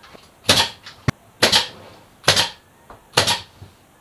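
Pneumatic brad nailer driving brads into wooden trim strips: four short, sharp shots about a second apart, with a fainter click among them.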